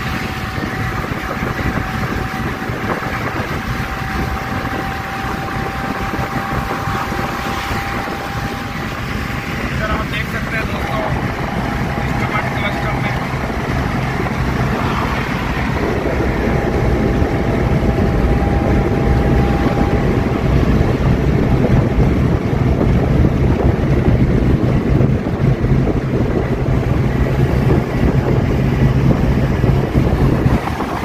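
Cabin noise of a Maruti Suzuki Eeco petrol van cruising on an expressway: steady road and wind rush with the engine running underneath. It grows louder through the second half, with a low drone coming up about halfway through.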